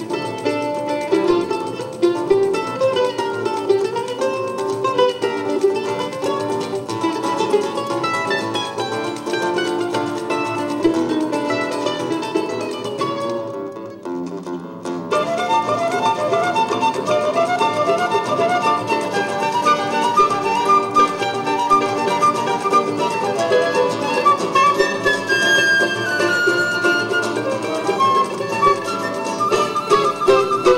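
Live acoustic Brazilian choro ensemble: a bandolim plays the melody over seven-string guitar and pandeiro. The music thins out briefly about halfway, then comes back in full, and a flute carries a held melody line near the end.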